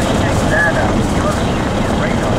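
Steady road and engine noise heard inside a moving car's cabin.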